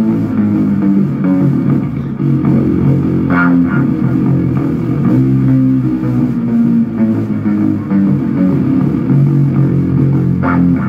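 Live rock music, loud: an amplified electric guitar plays a slow riff of long-held low notes, with little or no drumming under it.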